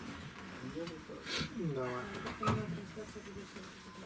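Speech only: a short spell of low, casual talk in a small room, including a brief "da".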